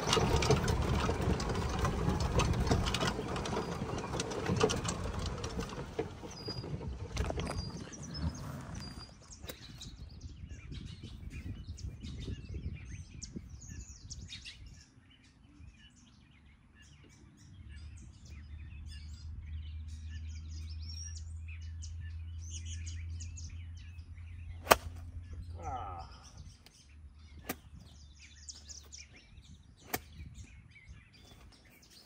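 A golf cart driving across grass, with rushing wind noise, for the first nine seconds. Then birds chirping over a quiet open course, with a low steady hum in the middle and a couple of sharp clicks near the end.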